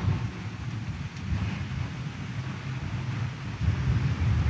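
Low rumbling room noise of a large church congregation getting to its feet, with no clear separate events.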